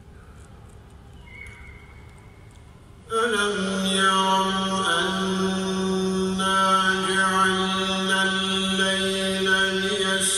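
Quiet room tone, then about three seconds in a man begins reciting the Quran in a melodic chant, drawing out long held notes in a large mosque hall.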